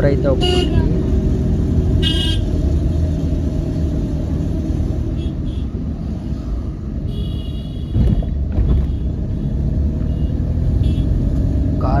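Steady low engine and road rumble of a moving vehicle, with short horn toots about two seconds in and a longer horn blast around seven to eight seconds.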